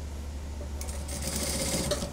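Industrial sewing machine stitching through suit fabric in one short run of rapid needle strokes, starting just under a second in and stopping abruptly near the end, over a steady low hum.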